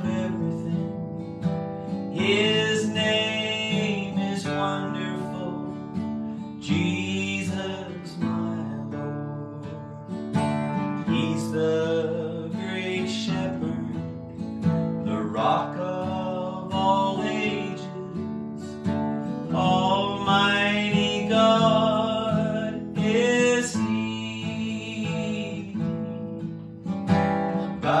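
A man singing a gospel hymn while strumming an acoustic guitar.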